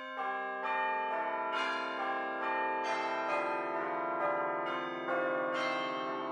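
Bell-like chime music: a slow melody of ringing notes, each one held and overlapping the next, a new note coming in roughly every half second to second.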